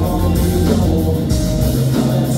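Live rock band playing loud and steady: electric guitars over a full drum kit, with cymbals ringing throughout.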